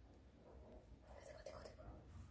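Near silence, with a faint whisper from about a second in.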